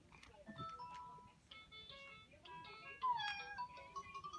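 Electronic baby activity toy (VTech alphabet train) playing a short electronic tune of stepped beeping notes as its buttons are pressed, with a gliding pitched sound about three seconds in.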